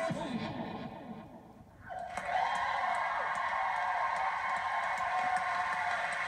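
A vocal dance track fades out in the first second or so; after a brief lull, a studio audience breaks into steady applause and cheering about two seconds in.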